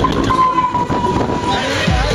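Spinning fairground swing ride in motion: a low rumble and rattle, with one steady high tone held for about a second.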